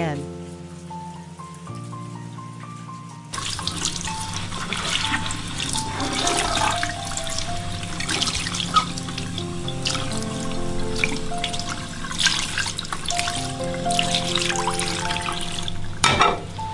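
Water running from a tap into a bowl of mushrooms, starting suddenly about three seconds in and splashing steadily, over background music with slow stepped notes.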